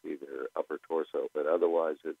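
Speech only: a person talking continuously over a narrow, phone-like radio line.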